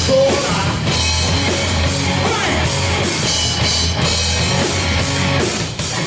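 Live rock band playing loud: electric guitar, bass guitar and drum kit, with a brief break just before the end.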